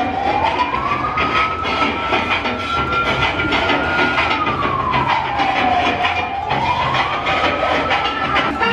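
A siren wailing slowly: its tone rises, holds high for a few seconds, falls, then rises again, over a steady background din.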